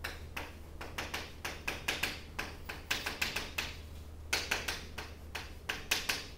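Chalk writing on a chalkboard: a quick, irregular run of taps and short scratches as words are written out, over a low steady hum.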